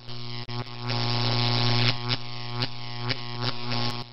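Neon-sign buzz sound effect: a steady low electrical hum with sputtering clicks and brief dropouts as the light flickers on.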